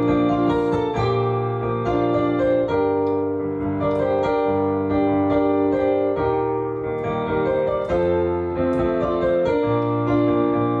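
Kawai piano played solo: an instrumental passage of held chords under a melody line, with the notes changing about every second.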